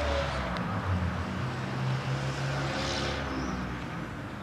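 Low, steady mechanical hum in the background, fading slightly near the end.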